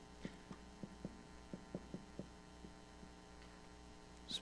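Marker writing on a whiteboard: a run of about ten faint, short strokes over the first three seconds, over a steady electrical hum.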